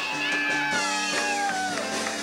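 Live cover band playing, the lead line in long, bending notes that slide slowly down in pitch over steady chords.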